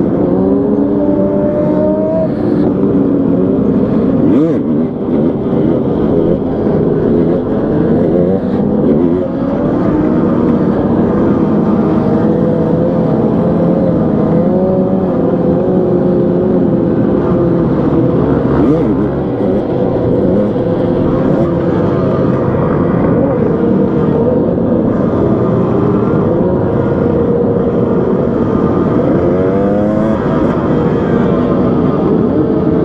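Motorcycle engine running at road speed, its pitch rising and falling with the throttle and climbing sharply near the end, among a group of other motorcycles.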